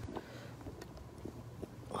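Faint handling noise from a camera on its stand being adjusted close to the microphone: a few small, scattered clicks and knocks over a low rustle.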